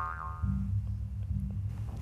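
Background score: a fading pitched tone at the start, then low, steady bass notes from about half a second in.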